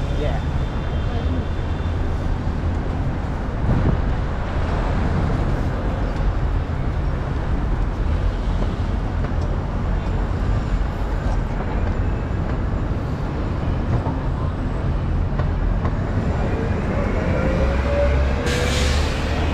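Street traffic at a busy city intersection: cars, taxis and a city bus driving past, with a steady low engine hum under the noise of tyres and engines. A brief thump about four seconds in, and a rising engine note near the end as a bus pulls through.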